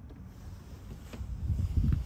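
Wind buffeting a phone microphone outdoors, a low uneven rumble that grows a little towards the end, with light handling noise and a faint click about a second in.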